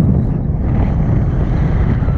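Loud wind rushing over the camera microphone during a tandem paraglider flight, a steady low rumble of buffeting air.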